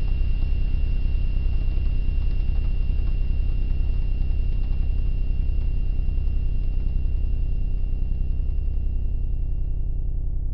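A loud, steady low rumble with a fast, even pulse, under a thin, steady high-pitched tone and a faint hiss.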